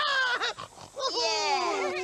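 Voices imitating pigs: a short squealing call, then a longer squeal that slides down in pitch.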